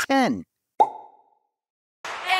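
Editing sound effects: a short sound sliding steeply down in pitch, then a single short pop just under a second in that dies away quickly.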